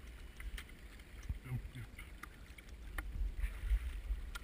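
Shallow stream water splashing and sloshing as the electro-fishers wade and sweep a hand net and the electro-fishing anode through it, over a low rumble, with a few small knocks.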